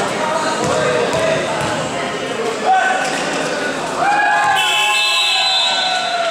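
Voices calling out and shouting on an indoor basketball court, louder from about four seconds in, with a basketball bouncing on the hardwood-style court floor.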